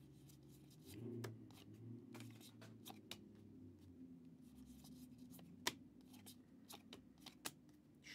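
Faint, irregular clicks and soft snaps of glossy 2023 Elite football trading cards being slid one at a time off a hand-held stack, with one sharper snap just before six seconds in. A steady low hum sits underneath.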